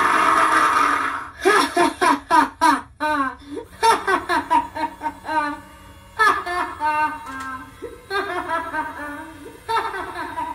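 Spirit Halloween Lil Jack Carver animatronic's speaker playing its scare track: a loud burst as the pumpkin head comes off, dying away about a second in, then a cackling, giggling laugh in repeated bursts.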